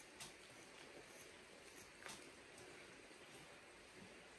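Near silence: faint room tone with a few soft ticks, the clearest two about two seconds apart, from hair being plucked out of an Airedale Terrier's coat with a stripping tool during hand-stripping.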